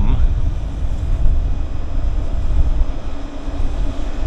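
Wind buffeting the microphone, a fluctuating low rumble, with faint steady high tones above it.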